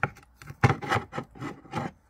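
Metal spoon scraping and scooping in a ceramic bowl of dry plaster of paris powder: a sharp scrape at the start, then a quick run of about six rasping strokes.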